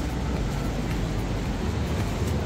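Steady low rumbling outdoor background noise, strongest in the bass, with no distinct events.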